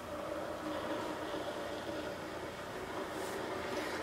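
VAVA 1.7-litre stainless steel electric kettle heating water toward the boil: a steady, quiet rushing hiss with a low hum underneath.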